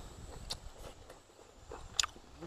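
A man chewing a mouthful of food, faint small mouth clicks, then one sharp click at the end as chopsticks strike the plate.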